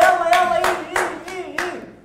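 Hands clapping in a steady rhythm, about three claps a second, cheering on men holding push-ups. Over the first part a man's voice holds one long call.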